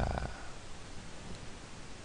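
Steady low hiss and hum of room tone and microphone noise in a pause between spoken words, with the end of a spoken word at the very start.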